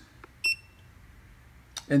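Cascade Power Pro power monitor console giving one short, high-pitched electronic beep as its start/stop button is pressed, confirming the press and stepping to the next setting in diagnostic mode.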